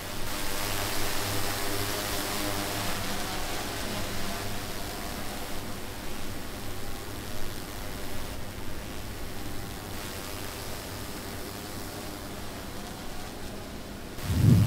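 Steady hiss-like background noise with a faint low hum underneath and no distinct events.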